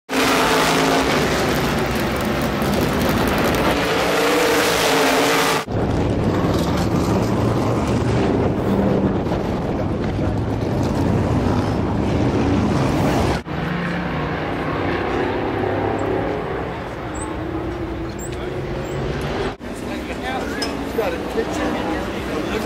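Loud supermodified race-car engine noise in several clips joined by sudden cuts, about every six to eight seconds, with voices over it near the end.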